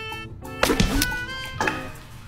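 Background music, cut by a loud wet smack about half a second in as a pitched gob of waffle batter is struck and splatters, with a lighter knock about a second later.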